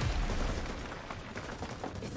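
Battle sound effects from a TV series soundtrack: gunfire and a low rumble, starting with a sharp crack and then fading.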